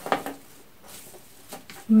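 Faint rustling and a few light clicks as fresh herb stems are picked up off a wooden table and worked into a hand-held bouquet. A short bit of a woman's voice is at the start, and a spoken word begins at the end.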